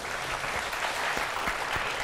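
A studio audience applauding, steady clapping from many hands.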